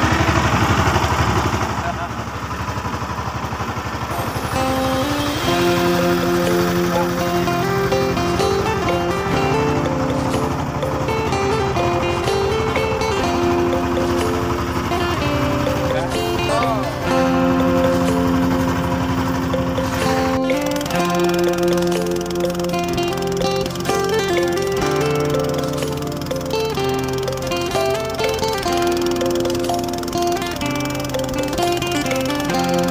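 Background music with a slow, held melody, laid over the low steady running of a boat engine that cuts out about two-thirds of the way through.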